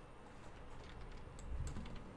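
A few faint clicks from a computer keyboard and mouse as a search is typed, with a low rumble near the end.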